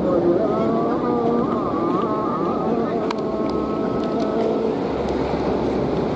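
Hummers on many Balinese bebean kites flying overhead, droning together as several overlapping, wavering tones, with wind on the microphone and a few faint clicks from about halfway.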